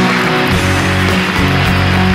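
Background music with guitar, held low notes and a full, dense upper range.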